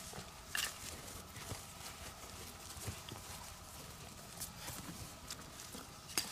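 A metal hand trowel digging in dry, clumpy soil: scrapes and scattered knocks. A sharp one comes about half a second in, with a few more spread irregularly after it.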